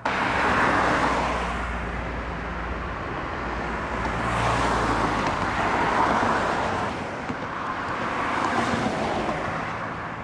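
Cars passing on a two-lane highway, their tyre and engine noise swelling and fading about three times, with a low engine rumble under the first pass.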